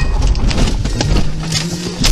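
Car engine and road noise heard from inside the cabin, a steady low hum with a few short clicks.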